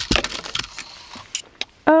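Small hard-plastic toy submarine and diver figure clattering as the diver falls off: a quick run of clicks and knocks in the first half-second, then a few single clicks.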